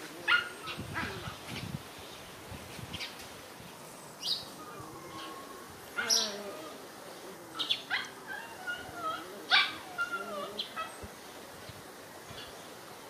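Puppies play-fighting, giving sharp yelps and barks about a second in, near four and six seconds and near ten seconds, with wavering whines in between.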